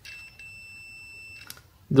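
Digital multimeter's continuity buzzer giving one steady high-pitched beep for about a second and a half, cut off with a small click: the probes are across the travel adapter's live connection, and the beep shows it is connected.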